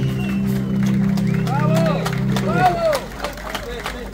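A live band's last held chord ringing out and cutting off about three seconds in, with a man's voice calling out over it and scattered clapping.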